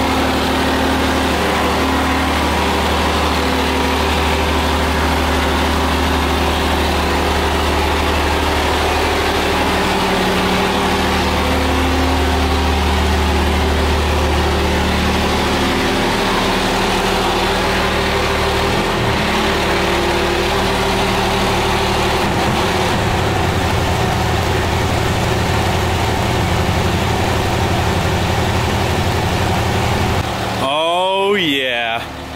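Dodge Ram's Cummins diesel engine idling steadily, its low note shifting about halfway through. The transmission and transfer case have just been filled, and the engine is running before a test drive.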